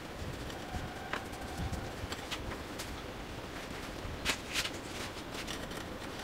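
A cloth being rubbed by hand over a motorcycle drive chain to wipe off the diesel used to clean it: a few short rubbing strokes, two close together about four seconds in, over a steady background hiss.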